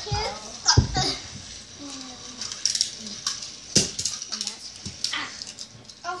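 Young children's voices, unclear and partly laughing, in a small room, with several sharp knocks and clicks; the loudest knocks come just under a second in and about four seconds in.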